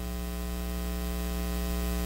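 Steady electrical mains hum: a low, unchanging hum with a stack of higher overtones above it.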